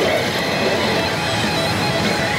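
Pachislot machine's music with guitar, playing over the steady din of a pachinko parlour.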